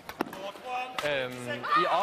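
Speech, with a few sharp knocks: two close together at the start and one about a second in.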